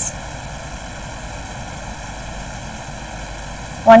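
Steady background noise: room tone and recording hiss in a pause between spoken explanations, with a voice starting again near the end.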